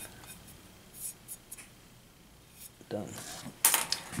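A few faint, short brushing strokes: a small paintbrush whisking stray dry enamel powder off a copper dish.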